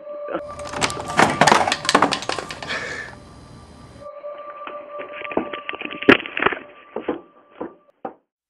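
A door being broken in: about three and a half seconds of loud crashing and splintering with many hard impacts, then scattered knocks and thumps with one sharp crack about six seconds in.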